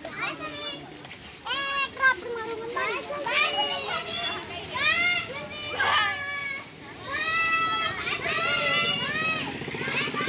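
Schoolchildren's high-pitched voices calling and chattering in short bursts, louder and more continuous over the last few seconds.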